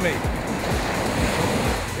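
Ocean surf washing in at the shoreline, a steady dense rush of water noise, with a background music beat thumping underneath.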